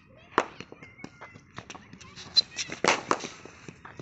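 A GM cricket bat striking a cricket ball in net practice, heard among a run of sharp knocks; the loudest knocks come a little over two seconds in and around three seconds in.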